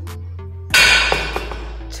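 Background music with a steady bass. About a second in, one sharp metallic clank rings and dies away as the bent EMT steel conduit is handled against the table.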